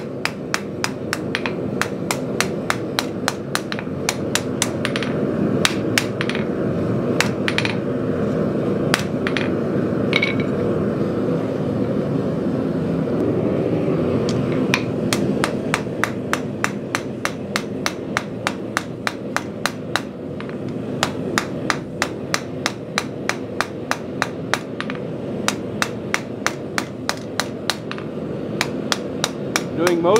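Hand hammer striking a red-hot half-inch square steel bar on an anvil, a long run of sharp, even blows about three a second, with a short let-up midway: the bar's sharp factory corners being beveled and textured. A steady low roar runs underneath.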